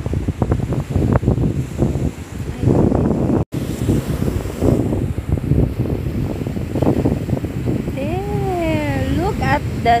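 Wind buffeting a phone's microphone on a beach, a loud, rough rumble with crackles from the phone being handled and turned. The sound drops out for a moment about a third of the way in. Near the end comes one long wavering call that rises and falls in pitch.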